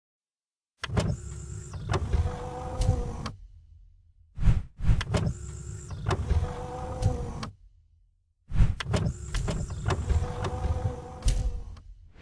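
Three mechanical sound effects, each about three seconds long with short silent gaps between: each starts with a clunk and runs as a steady motorised whir, like an electric window motor.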